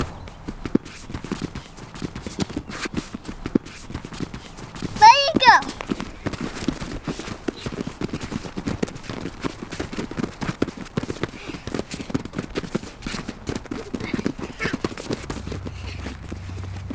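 Hands and feet patting and slapping on vinyl gymnastics mats as several children bear-crawl, a quick, irregular run of soft slaps. A child's voice calls out briefly about five seconds in.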